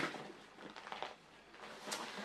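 Faint rustling and a few light knocks as toiletry bottles are handled and moved about in a bag.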